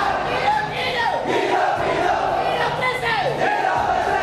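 A large protest crowd shouting and cheering, many voices at once, with a long falling shout rising out of it about every two seconds.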